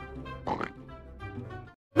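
Cartoon pig oinking over a soft music bed, with one clear oink about half a second in and fainter ones after. The sound cuts off suddenly just before the end.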